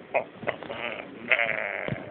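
A cartoon character's voice giving short yelps, then a high, wavering, bleat-like cry that starts about halfway through. A short low knock comes near the end.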